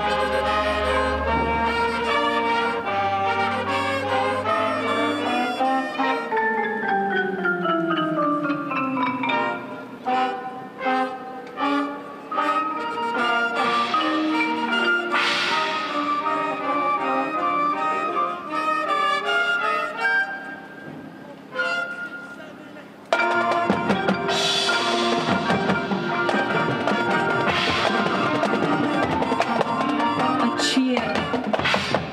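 High school marching band playing its field show: brass with mallet percussion such as marimba from the front ensemble, including a falling run of notes a few seconds in. The music thins out and drops in level from about twenty seconds in, then the full band and drums come back in loudly about twenty-three seconds in.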